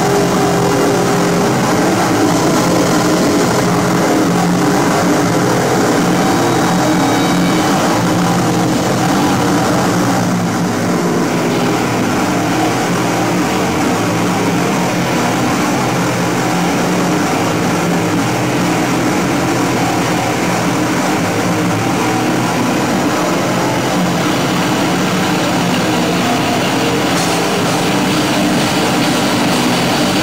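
Live noise-rock band playing: heavily distorted electric guitars and drums in a dense, unbroken wall of sound.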